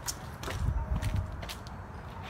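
A few sharp clicks and low thuds of someone moving and handling gear, with the loudest thuds around the middle.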